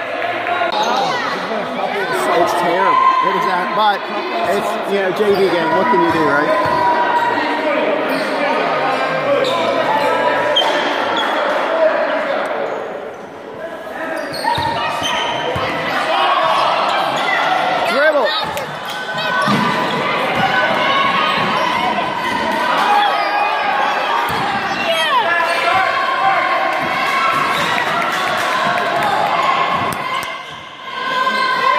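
A basketball bouncing on a hardwood gym floor during a game, heard under ongoing voices of players and spectators in a large, echoing gym.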